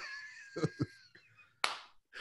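Men laughing quietly and breathily, with a thin wheezy note at first, a couple of soft laughs, and a sharp burst of breath about a second and a half in.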